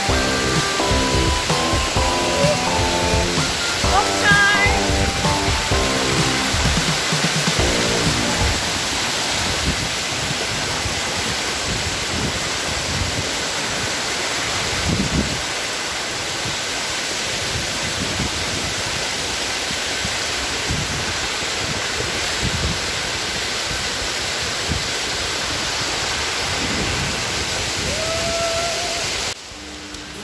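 Background music with clear notes over the steady rush of water cascading down a rocky river waterfall; the music stops about eight seconds in and the rushing water carries on alone.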